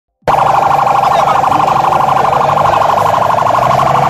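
Siren sounding loud and continuous at a steady pitch with a fast pulsing warble, starting just after the opening, over a low steady hum.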